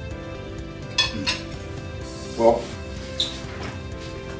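A metal fork clinks twice against a plate about a second in, and once more, faintly, after the three-second mark, over steady background music. A short pitched sound near the middle, likely from the eater's mouth or throat, is the loudest moment.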